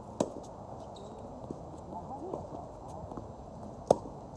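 Tennis racket strings striking the ball during a rally: a sharp pop just after the start, fainter ball sounds in the middle, and the loudest pop near the end as the near player hits a forehand.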